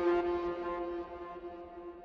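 The final held note of a music outro sting, ringing on and fading out steadily.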